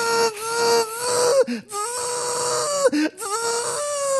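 A man imitating a dentist's drill with his voice: a steady, buzzing whine in three long stretches, with short breaks about a second and a half and three seconds in.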